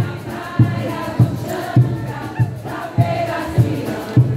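Live street music: a chorus of voices singing together over a steady bass drum beat of just under two strikes a second.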